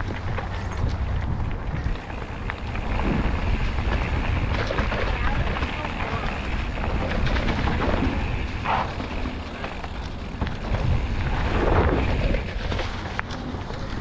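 Mountain bike riding over a dirt and gravel trail covered in dry leaves: tyres rolling and crunching, with occasional knocks from the bike over rough ground, under steady wind buffeting on the microphone.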